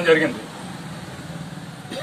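A man's speech breaks off just after the start, leaving a pause filled by a steady low background hum; his voice returns right at the end.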